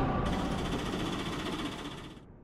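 A dramatic background music cue fading out, its tail a fast, even rattling shimmer that dies away.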